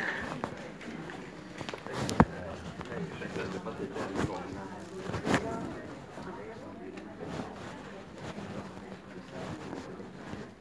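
Indistinct background voices and room noise in an office waiting hall, with a few sharp clicks or knocks, the loudest about two seconds in and another about five seconds in.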